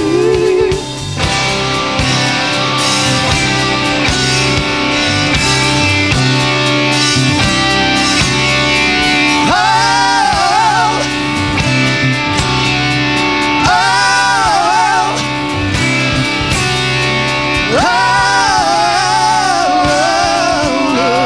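Live rock band playing with electric guitars, bass and drums. A high, sustained lead line that bends and wavers in pitch comes in three times: about ten, fourteen and eighteen seconds in.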